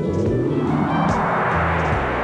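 Television sports ident music: a loud rushing whoosh that spreads upward in pitch over a steady bass line.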